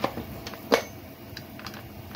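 Plastic top cover of a Husqvarna 450 Rancher chainsaw being pressed back into place, giving a few light plastic clicks and taps as its clips seat, two sharper ones at the start and under a second in.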